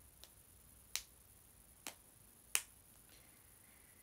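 Four short, sharp clicks, each under a second after the last, the final one loudest, over faint room tone.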